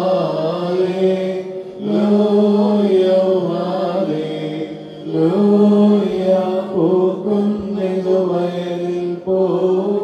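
Syriac Orthodox liturgical chanting by several voices over a steady held note, sung in phrases with brief breaks about two, five and nine seconds in.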